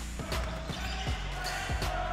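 A basketball bouncing on a hardwood court: about six short, dull bounces at uneven intervals, as in dribbling.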